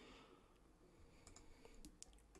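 Near silence with a few faint, short computer clicks from working the mouse and keys, mostly in the second half.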